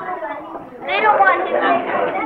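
Children's voices chattering, talking over one another in a classroom.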